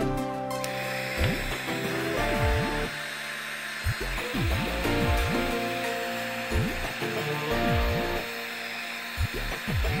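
Electric heat gun blowing a steady rush of hot air, starting about half a second in, to shrink heat-shrink tubing over a braided speaker cable. Background music plays throughout.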